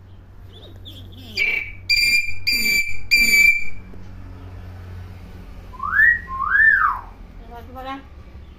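Common hill myna whistling: a run of three loud, clear whistled notes about two seconds in, then two rising-and-falling whistle glides near the end.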